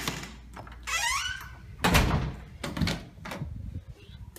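An interior door squeaks on its hinges about a second in. A loud thunk follows near two seconds, then a few lighter knocks as the door and its knob are handled.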